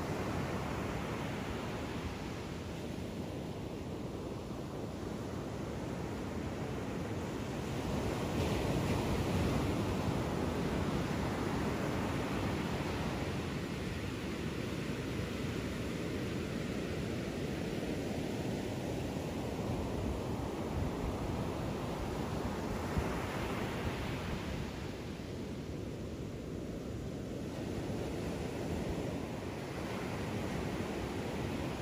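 Ocean surf breaking on a sandy beach: a steady rush of water that swells and eases with the waves, loudest about a third of the way in.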